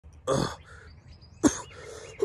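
A man's breathy laugh with an exclaimed "God", then a short throat-clearing cough about a second and a half in, strained by a boa constrictor squeezing around his neck.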